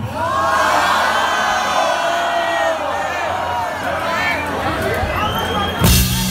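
Concert crowd cheering and screaming, many voices overlapping. Near the end comes a sudden loud hit as the band starts the song.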